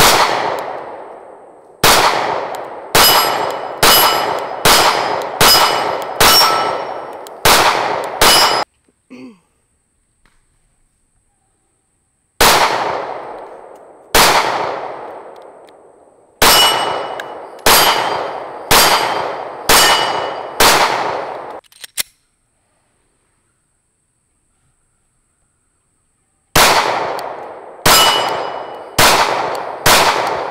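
9mm subcompact pistols (SIG P365, Smith & Wesson M&P Shield, Glock 43) firing single shots in three strings: about ten shots, a pause, about eight more, a longer pause, then another quick string starting near the end. Each shot is a sharp crack with a ringing tail that fades over about a second.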